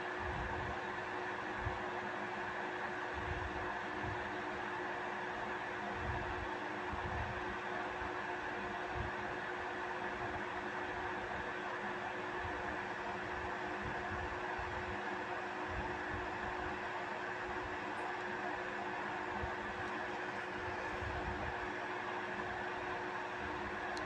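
Steady mechanical hum and hiss of room noise, with a faint, uneven low rumble underneath.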